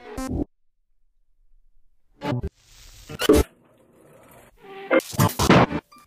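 Electronic composition built from the cropped opening attacks of tracks from an MP3 collection, strung together without fades, playing back. Short fragments of recorded music start and stop abruptly, with a silence of over a second near the start and a longer, louder fragment near the end.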